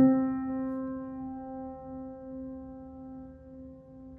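Steinway grand piano: a single mid-range note struck once and left to ring, dying away slowly over several seconds. The key is struck and the tension released at once, so the hammer drops away and the note rings and projects.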